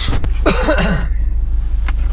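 A short cough or throat-clearing inside a car cabin, about half a second in, over the low steady rumble of a Subaru Forester's engine idling, with a few sharp clicks at the start and a single click near the end.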